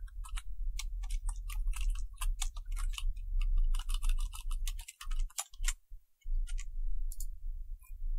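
Computer keyboard typing: quick, irregular key clicks, thinning out in the second half, over a low hum.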